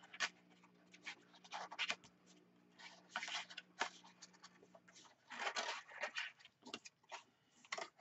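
Cardstock being unfolded and handled: short, irregular rustles and scrapes as the sheets slide against each other and the cutting mat.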